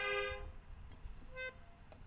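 A musical instrument holds one steady note that stops about half a second in, followed by a short second note in the middle of the pause.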